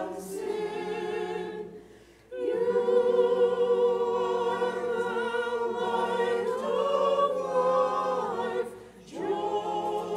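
Unaccompanied choir singing a liturgical chant: a short phrase, a brief pause about two seconds in, then one long held phrase, with another short break near the end before the singing resumes.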